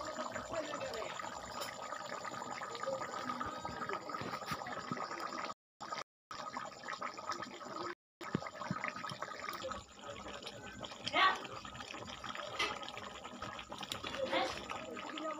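Thick meat curry boiling hard in a metal pot, with dense bubbling and popping. The sound cuts out briefly twice in the middle, and there is a short louder sound about eleven seconds in.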